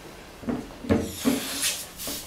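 Handling knocks and short rubbery squeaks, four in all, as a rubber balloon is worked over the neck of a glass conical flask on a wooden table, with a thin hiss coming in during the second half.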